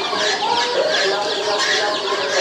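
Many caged chickens, white roosters among them, clucking and calling over one another in a dense, steady chorus.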